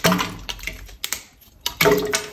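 Crisp clicks and taps of solid wax pieces being handled and dropped into a metal vat of melted wax, a cluster near the start and again near the end with a quieter gap between.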